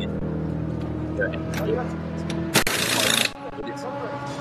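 Pit-stop sounds around a GT3 race car: a steady low mechanical hum with several tones, then, about two and a half seconds in, a loud burst of hissing compressed air lasting under a second, after which the hum stops.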